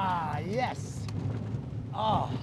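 A roller-coaster rider yelling, his voice gliding upward in pitch for most of a second, then a steady low rumble from the moving coaster train for the rest.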